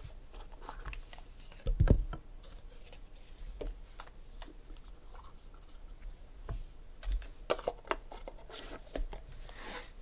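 A small cardboard trading-card box being opened and handled, with scattered light clicks and scrapes and a knock about two seconds in, as the stack of cards is slid out and set down on the table.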